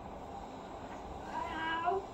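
A toddler's drawn-out, high-pitched vocal sound, starting about a second and a half in and rising slightly at its end, over faint room hum.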